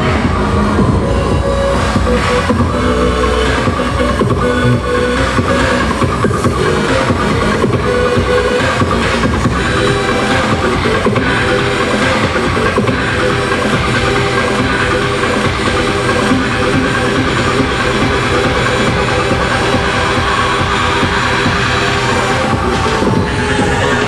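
Live electronic music played loud through a concert sound system, with a steady heavy bass and layered sustained synthesizer tones.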